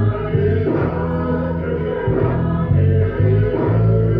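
Group singing a rākau stick-game song over music, played back through a computer monitor's speakers.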